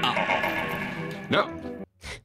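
A man's wild, warbling shriek, like a horse's whinny, over background music, with a rising-and-falling cry partway through; the sound cuts off suddenly near the end.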